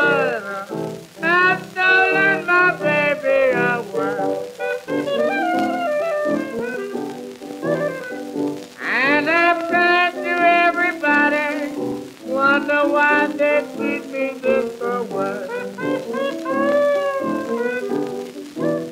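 Early barrelhouse piano blues recording: piano playing with a bending, wavering melody line over it, including a rising slide about halfway through.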